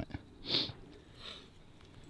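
A person sniffing once, sharply, about half a second in, followed by a fainter breath a little over a second in.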